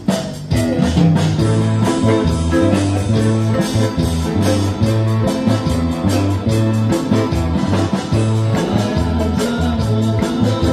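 Live amplified band playing a pop cover, with electric bass, electric guitars and keyboard. The level dips briefly right at the start, then the music runs on steadily.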